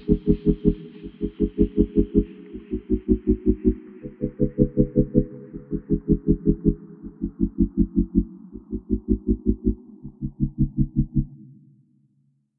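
Background electronic music: a deep bass pulse repeating about six times a second under a held low synth chord. The treble is steadily filtered away until the music stops shortly before the end.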